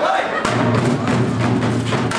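A group of dhol drums played together in a fast, steady beat of sharp strokes over a low drum boom.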